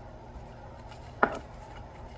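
Tarot cards being shuffled by hand, with faint card flicks and one sharp knock about a second in, over a steady low room hum.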